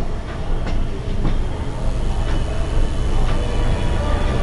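Felt-tip marker writing on a whiteboard: a handful of short strokes and faint squeaks, over a loud, steady low rumble from an unseen source.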